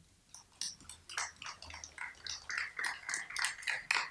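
Scattered applause from an auditorium audience: a few people clapping unevenly, thickening after about a second.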